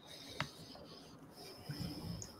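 A quiet pause with faint rustling and one sharp click about half a second in.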